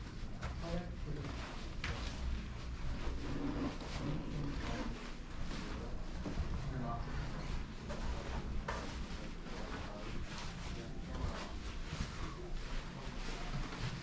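Footsteps on carpet and the rustle and handling noise of a body-worn camera as someone walks, with irregular soft knocks over a steady low rumble and faint indistinct voices.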